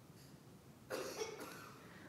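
One short, faint cough from a person, about a second in, against quiet room tone.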